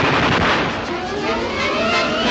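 Film sound effect of rapid machine-gun fire, a dense loud rattle. A rising pitched glide comes in about a second in.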